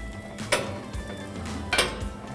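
Aluminium sheet tray being slid out of a commercial overhead broiler, with two sharp metal clanks against the broiler rack.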